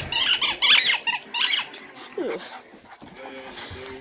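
Pet dogs making short, high-pitched play noises during rough play in the first second and a half, then a single falling whine a little after two seconds.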